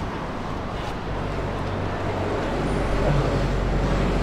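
Street traffic noise: a motor vehicle's engine running close by, a steady low rumble that grows slightly louder in the second half.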